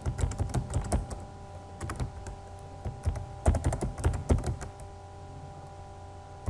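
Typing on a computer keyboard: quick runs of key clicks in several bursts, with a pause near the end.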